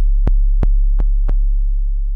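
Synthesized 808 bass drum from the MPC's Drum Synth plugin: one long, low boom that slowly fades, with a light tick about every third of a second over it.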